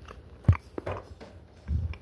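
Close-up biting and chewing of a baked oatmeal bite, with one sharp bite-click about half a second in and a short low burst of chewing near the end.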